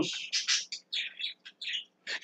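A small bird chirping: a quick series of short, high chirps during a pause in the speech.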